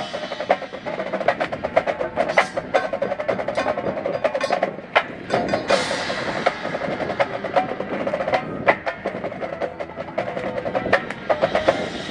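Percussion ensemble playing: fast snare and tenor drum strokes over ringing marimba and vibraphone notes, with two loud crashes, about two and a half and six seconds in.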